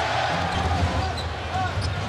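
Basketball being dribbled on the hardwood court over the steady murmur of an arena crowd.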